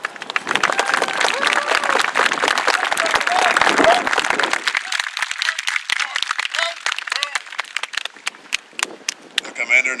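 Audience applauding, densely for the first half with some voices mixed in, then thinning to scattered claps by the end.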